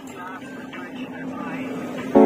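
A motor vehicle's engine running steadily, slowly getting a little louder.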